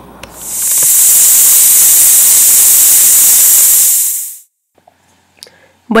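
Stovetop pressure cooker's valve venting steam in a loud, high, steady hiss as it starts to 'chillar'. The hiss swells in about half a second in and stops abruptly after about four seconds. It is the sign that the cooker has come up to pressure and the flame should be turned down to minimum.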